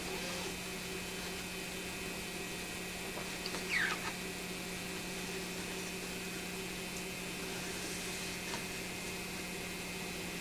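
A steady low electrical hum, with faint handling sounds of fingers and a blade on adhesive shading film laid over a comic page. One short squeak falls in pitch about three and a half seconds in.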